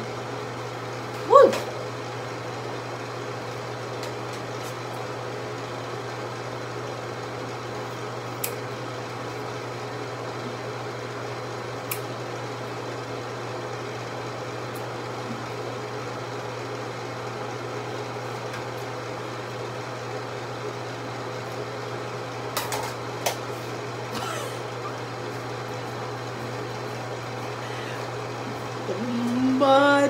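A steady low mechanical hum. A brief vocal sound comes about a second and a half in, and a few faint clicks fall later.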